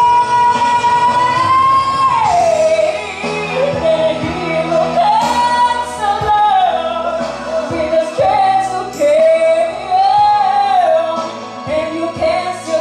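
A woman singing karaoke into a handheld microphone over a backing track, in a room with some echo. She holds one long high note for about two seconds, then the melody drops and moves on in shorter, gliding phrases.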